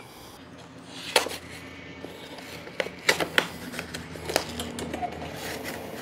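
Cardboard packaging being torn and pulled apart by hand around aluminum rails: irregular sharp rips and crackles.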